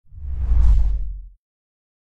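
A deep whoosh transition sound effect that swells and dies away within about a second and a half, mostly a low rumble with a fainter hiss above it.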